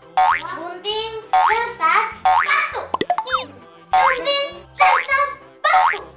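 Young girls' voices calling out in short, excited bursts during a rock-paper-scissors round, over bouncy children's background music with a steady bass pattern. About halfway through, a springy cartoon 'boing' sound effect.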